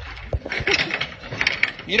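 A door being handled: one sharp knock, then a run of rattling, clicking metal hardware.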